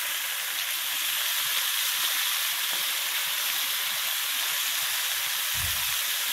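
Flanken-cut beef short ribs sizzling steadily as they sear in a hot frying pan while being turned with tongs. There is a brief low bump near the end.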